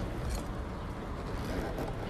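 Steady low background rumble and hiss, with no distinct event.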